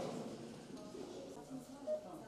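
Faint, indistinct voices in a small room.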